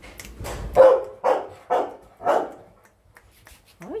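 A dog barking four times in quick succession, about half a second apart.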